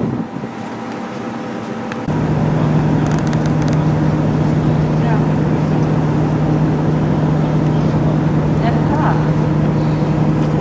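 Ship's whistle on a car ferry sounding one long, steady low blast that starts suddenly about two seconds in and holds on. It is the ferry's departure signal, given over the ship's engine rumble.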